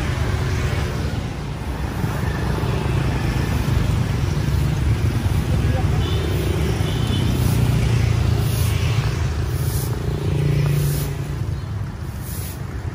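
Street traffic, mostly motorbikes, passing on a city road, with a steady low engine rumble.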